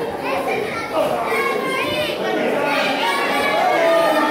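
Wrestling crowd, children's voices among them, shouting and chattering in a large hall.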